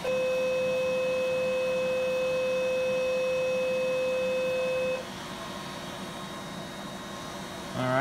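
Steady electronic activation tone from an Ellman Surgitron radiofrequency surgical unit while its wire loop cuts off a mole. The tone holds one even pitch for about five seconds, then cuts off abruptly, leaving the steady rush of the smoke evacuator.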